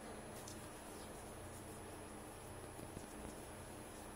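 Quiet room tone with a faint steady high whine and a few soft ticks from hands handling shed hair, rolling it into little balls.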